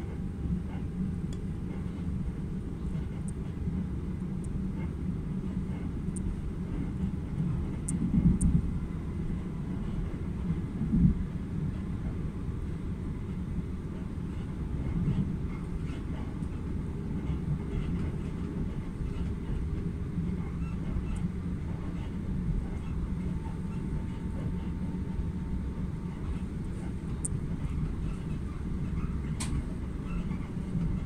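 Steady low rumble of an electric passenger train running at speed, heard from inside the carriage. There are two louder bumps, about eight and about eleven seconds in.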